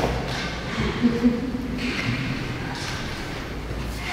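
Large hall in a pause between speech: faint voices, a couple of soft thumps and brief rustling over a low room hum.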